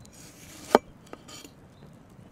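A large forged cleaver-style knife slicing through a ripe tomato with a soft wet hiss, ending in one sharp knock of the blade on the wooden cutting board about three-quarters of a second in. A lighter tap and a short slicing sound follow.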